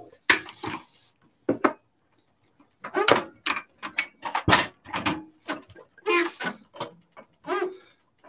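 Handling at an espresso machine, with one sharp knock about halfway through, mixed with soft, indistinct speech.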